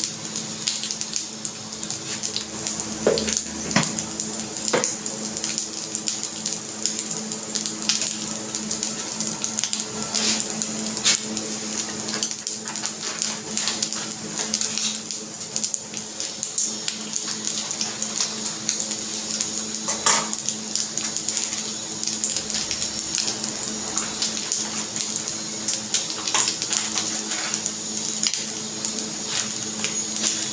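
Wooden spatula scraping and knocking against a non-stick kadhai as rice is stirred and fried, with many irregular clicks, over a steady frying hiss and a low steady hum.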